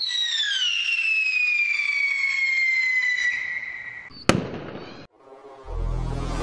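Intro sound effect: a long whistle falling slowly in pitch for about four seconds, cut off by a single sharp bang, like a firework. Near the end a low swell of noise rises in.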